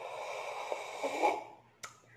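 Coffee slurped from a mug as a deliberate tasting slurp, air drawn in with the sip for about a second and a half. A short click follows near the end.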